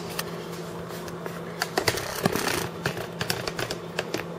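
Irregular small clicks and rustles, thicker in the second half, over a steady low hum of the room.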